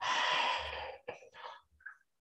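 A man's audible breath out, a breathy rush of about a second, followed by a few faint short sounds.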